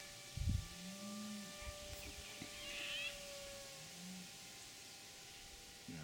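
Faint, steady drone of a quadplane's electric motor and propeller high overhead, its pitch slowly falling. A short low thump comes about half a second in, and two brief low calls, each rising then falling in pitch, come from an unseen animal.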